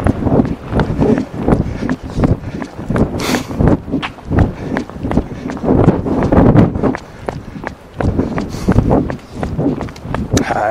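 Two people running side by side, their footfalls thudding in a steady rhythm, with wind buffeting the body-worn recorder's microphone.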